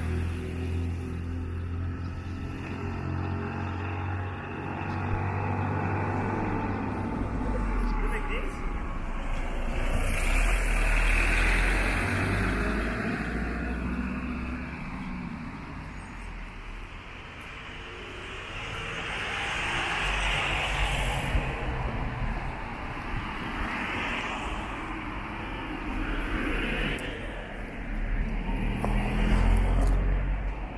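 Road traffic going by on a street: vehicle engine and tyre noise that swells and fades several times as cars pass, over a steady low rumble.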